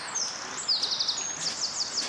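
A small bird singing: runs of quick, high chirps repeated several times a second, over light outdoor background noise.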